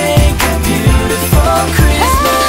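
Pop music with a steady drum beat, an instrumental stretch with no singing.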